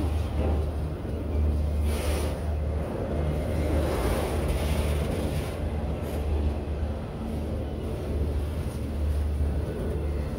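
Freight train of autorack cars rolling slowly past, a steady rumble of steel wheels on the rails, with a brief louder clatter about two seconds in.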